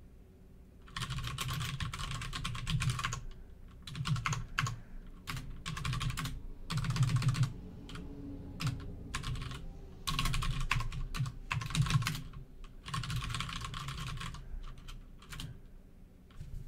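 Computer keyboard typing, starting about a second in: quick bursts of keystrokes with short pauses between them, as terminal commands are typed and edited.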